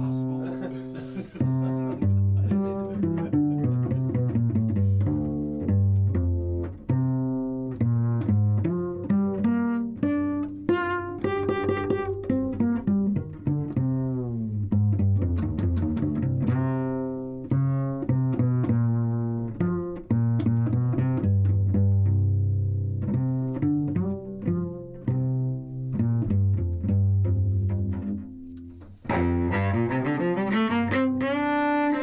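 Solo cello playing a flowing passage of many notes, with a few longer held low notes, amplified through a Bartlett mini condenser cello mic.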